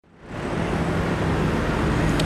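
Road traffic noise from cars at a roundabout: a steady hum and tyre noise that fades in at the start.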